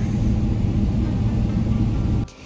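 Steady low rumble of a jet airliner's cabin with the engines running, heard from a passenger seat.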